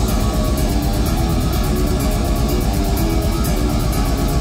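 Death metal band playing live: distorted electric guitars over fast, evenly paced drumming, loud and dense throughout.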